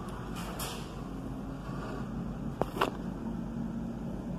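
Steady low background hum with two short, sharp clicks close together a little past the middle.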